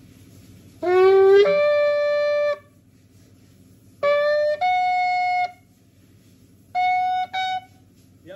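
Yemenite kudu-horn shofar blown in three blasts. Each blast jumps up from a lower note to a higher one as the player climbs through the horn's upper notes. The last blast is short and breaks once.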